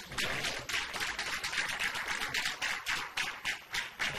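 Small studio audience applauding: a dense, irregular patter of hand claps that starts suddenly and keeps going.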